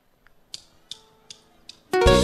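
A four-beat count-in of sharp clicks, evenly spaced about 0.4 s apart, typical of drumsticks struck together, and then the full live band with guitars and drums comes in together right at the end.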